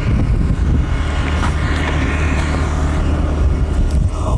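Motorcycle engine running at a steady cruising speed, a constant low hum under road and wind noise.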